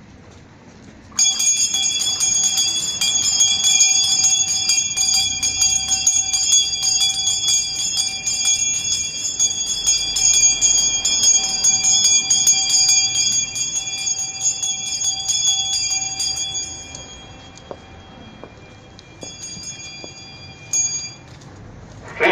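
Altar hand bells shaken continuously, a dense bright ringing that sounds the blessing with the Eucharist in the monstrance. The ringing starts about a second in, runs for roughly fifteen seconds, then fades, with a couple of brief shakes near the end.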